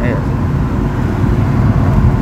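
BMW E36's 3.0-litre M52B30 straight-six, fitted with an M3 exhaust header, heard from inside the cabin: a steady low drone while cruising, not too noisy.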